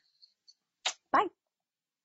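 A woman's single spoken "bye" with a falling pitch about a second in, just after a short breathy hiss. Otherwise dead digital silence, the gated audio of a video call.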